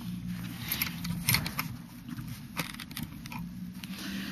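Handling noise of a small camera being moved about by hand: scattered soft clicks, crackles and rustles over a steady low hum.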